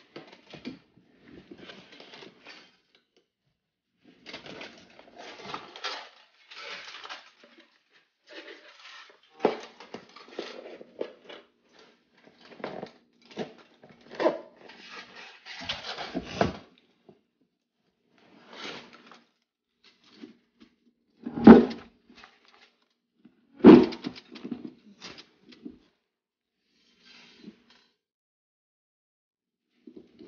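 Aluminium foil crinkling and rustling in irregular bursts as a foil-wrapped cardboard box is handled, with two louder knocks about two seconds apart late on.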